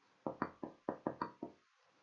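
Stylus pen knocking against a writing tablet as a word is handwritten: a quick run of about seven light taps over a second and a half, then it stops.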